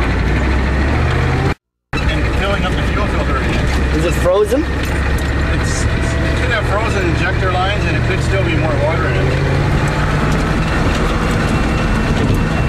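Ford pickup truck engine running steadily, heard from inside the cab, its low note rising slightly about halfway through. The sound cuts out briefly about one and a half seconds in.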